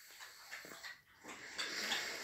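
A pet dog making faint, breathy noises, a little louder in the second half.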